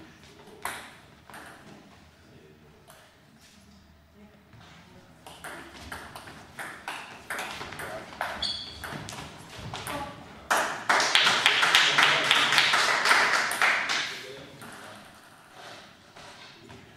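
Celluloid table tennis ball clicking off bats and table during a doubles rally, then, about ten seconds in, a few seconds of loud, dense clapping that fades out as the point ends.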